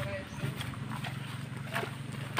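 Footsteps walking on grass, two steps about a second apart.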